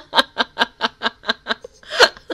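A woman laughing hard in quick, even bursts, about four to five a second, with a longer breathy gasp near the end.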